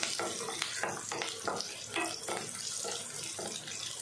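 Shallots sizzling as they fry in oil in a wok, stirred with a wooden spatula that scrapes and taps against the pan in short, irregular strokes.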